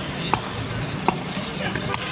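Cricket ball struck by the bat in street cricket: a fainter knock about a third of a second in as the ball bounces on the road, then the loudest, sharp crack of the bat hitting the ball about a second in, over steady street noise.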